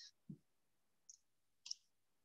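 Near silence, with a short soft low thump just after the start and a couple of faint clicks, the louder one near the end.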